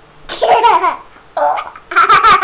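A toddler laughing: a high squealing burst with falling pitch, a short second burst, then loud rapid laughter starting near the end.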